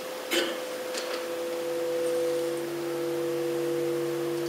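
A chord of three steady held tones played back over loudspeakers, from a recording of a sound-room composition. The tones start with a click about a third of a second in, and a second click follows about a second in.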